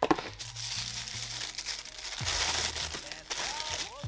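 Pink tissue paper crinkling and rustling as it is pulled away from a lip oil taken out of an advent calendar compartment. It gets loudest about two to three seconds in.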